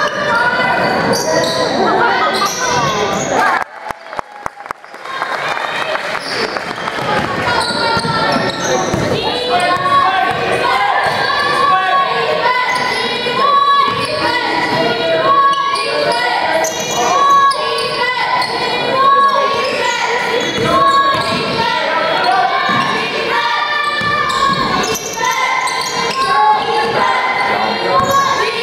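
A basketball game in a school gym: the ball bouncing on the hardwood floor amid players' and spectators' calls, echoing in the large hall. The sound briefly drops away about four seconds in.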